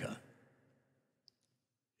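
A man's spoken word fades out in the first half second, followed by a pause of near silence broken by one faint, short click a little past the middle.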